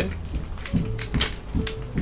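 Wooden chopsticks clicking against bento boxes and each other while eating: a scattered run of quick, light clicks, over faint background music.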